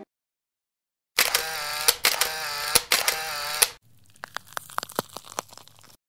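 Edited-in transition sound effect for a title card: after a second of silence, a bright burst of pitched sound with sharp clicks lasting about two and a half seconds, followed by a quieter run of rapid clicks and ticks.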